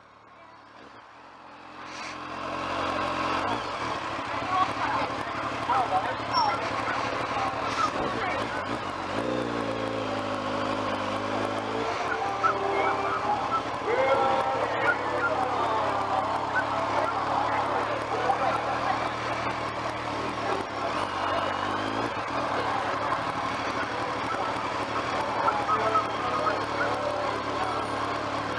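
Motorcycle engine running at low speed in slow traffic, steady throughout after fading in over the first two seconds, with the voices of a crowd of people mixed in.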